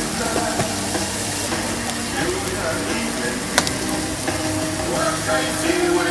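Sausages and sliced pork sizzling on a hot flat-top griddle, a steady hiss with a single sharp click about three and a half seconds in.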